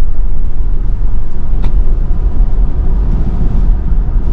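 Steady low rumble of road and tyre noise inside the cabin of a moving 2024 Lucid Air Touring electric car, with one short click about one and a half seconds in.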